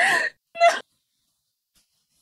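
Speech only: a voice saying "no, no", two short words in the first second.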